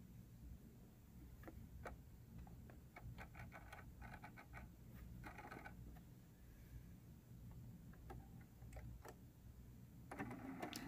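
Faint sewing machine stitching a seam: a low hum with light ticks scattered through.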